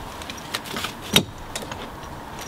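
Metal climbing spurs and their strap buckles clinking and rattling as they are handled and set down, with one sharp clink about a second in.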